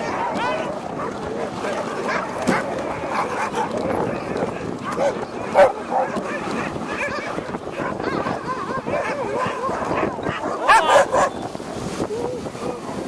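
Many sled dogs barking, yipping and whining together, excited at being hooked up to run, with louder bursts about halfway through and near the end.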